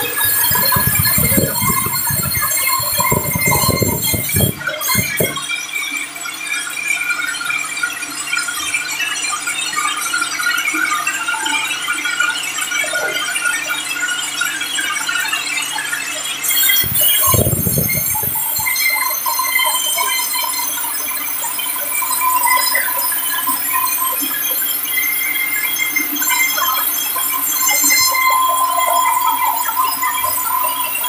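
Sawmill band saw running and cutting through a large timber, a steady high-pitched squealing whine. Heavy low rumbles break in during the first five seconds and again briefly around seventeen seconds.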